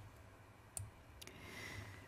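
A single short computer mouse click, advancing the presentation slide, about three-quarters of a second in, over faint room hiss.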